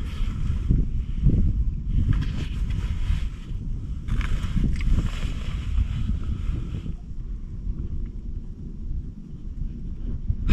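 Wind buffeting the microphone: a constant low rumble, with stretches of higher hiss that fade out about seven seconds in.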